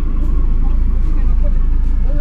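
Steady low rumble inside a car's cabin, with faint voices from outside the car.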